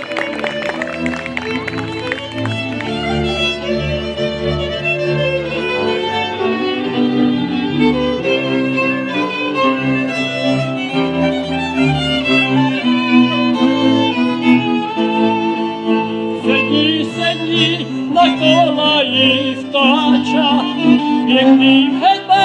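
A Moravian cimbalom band playing a folk tune: fiddles lead over the cimbalom, double bass and clarinet. A higher, wavering melody line joins about sixteen seconds in.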